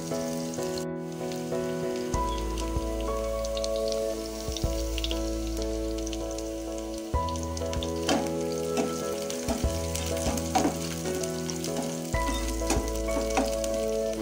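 Sliced onions sizzling in oil in a nonstick frying pan, with scattered scrapes of a metal spatula stirring them in the second half. Under it run held, slowly changing chords of background music.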